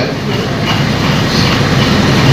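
Steady, fairly loud rushing room noise with no clear voice, as from a crowded hall's background hubbub and hum.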